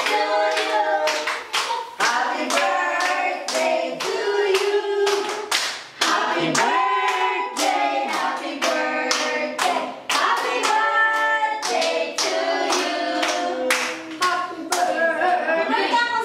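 A group of people singing a birthday song together while clapping in a steady beat.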